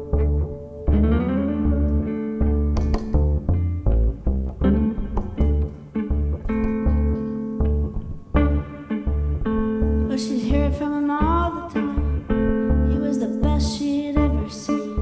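Live band instrumental break: an electric guitar plays lead lines with sliding notes over a plucked upright double bass keeping a steady beat. A violin comes back in near the end.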